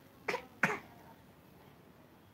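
Two short, quiet coughs from a woman, about a third of a second apart, near the start.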